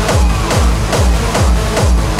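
Hardstyle electronic dance music driven by a heavy, pitch-dropping kick drum at just under three beats a second.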